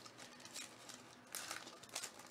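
Faint crinkling and tearing of a foil-lined Panini Contenders Draft Picks trading card pack being ripped open by hand, with a louder rustle about one and a half seconds in.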